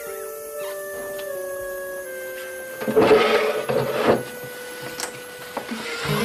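Soft background music of held, sustained notes. About three seconds in, a person gives a loud, choked sobbing cry lasting about a second.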